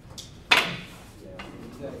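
Wooden fighting sticks striking in a sparring exchange: one sharp crack about half a second in, then a lighter knock about a second later.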